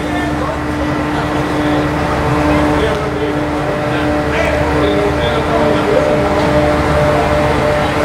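A loud, steady droning hum with a low rumble and several held tones, with faint voices underneath.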